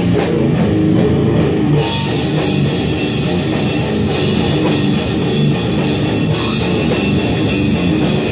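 Metal band playing live in a rehearsal room: distorted guitars, bass and drums at full volume. The sound gets markedly brighter about two seconds in.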